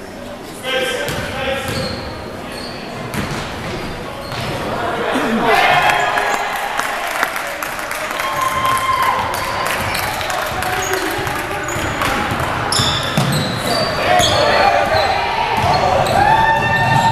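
Basketball bouncing on a hardwood gym floor during play, with short high sneaker squeaks and shouting voices, all echoing in a large gymnasium.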